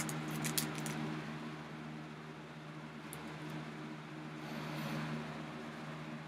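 A clear polypropylene paperback bag crinkling and clicking a few times in the first second as a book in it is handled. After that there is only a steady low hum.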